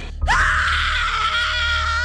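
A loud, high-pitched human scream, starting suddenly about a quarter second in and held steadily, over a low steady drone.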